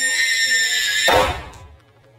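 A long, high-pitched, electronically altered tone that rises and then holds. It cuts off suddenly about a second in, when a loud crash of the door being smashed through takes over and quickly dies away.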